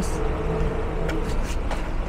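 A car engine idling with a steady low hum, a few light clicks in the second half.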